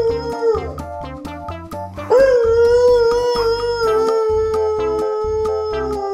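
Siberian husky howling: one howl trails off about half a second in, then a long, steady howl starts about two seconds in and slowly falls in pitch. Background music with a steady beat plays underneath.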